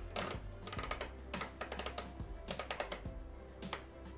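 Quiet background music with a run of soft, irregular clicks from the selector dial of a Thermomix (Bimby) as it is turned to set the cooking time.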